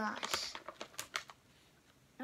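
Crinkling of a plastic Takis chip bag being handled, a run of quick crackles that stops after about a second and a half.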